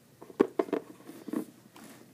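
A few short clicks and taps of hard glazed polymer clay charms being handled and set down among other charms on a table, the loudest about half a second in.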